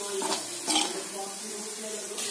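Sliced onions and curry leaves sizzling in oil in a pan while a spatula stirs them, scraping against the pan, with a louder scrape just under a second in.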